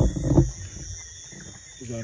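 Steady high-pitched chorus of insects. A loud low rumble on the microphone fills the first half second, and a short voice comes in near the end.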